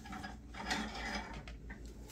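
Light clicks and rustling as fabric pot holders are handled and hung on metal hooks on a metal shelf stand.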